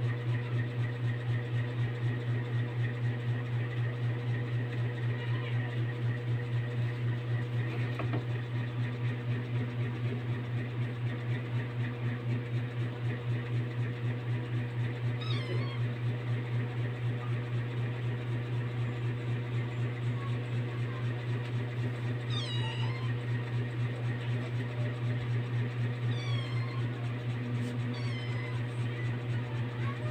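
A cat meowing four times in the second half, short falling calls, over a steady low hum.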